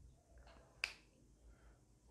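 Near silence with faint whiteboard-marker strokes, broken by one sharp click a little under a second in: the marker tapping the whiteboard.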